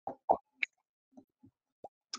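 A few brief mouth clicks and smacks from a speaker between sentences, the strongest near the start, against a background gated to dead silence by noise suppression.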